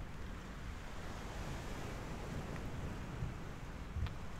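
Sea waves washing onto a shore: a steady surf sound with no breaks.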